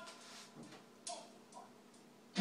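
Faint handling noise from an acoustic guitar being readied to play: a few soft, brief sounds, the first with a short ringing pitch at the very start, over a low steady hum.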